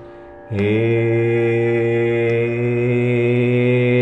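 A man singing a long, steady held note in Carnatic vocal style. He comes in about half a second in, after a brief breath, with a slight upward slide into the note.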